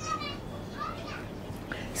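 Faint background voices in a pause between the narrator's sentences, with short snatches near the start and about a second in.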